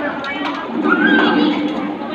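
Voices echoing in a badminton hall, with one loud shout that rises and falls in pitch about a second in.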